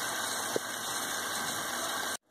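Mutton pieces sizzling in hot oil and masala in a pressure cooker: a steady hiss, with one faint click about halfway.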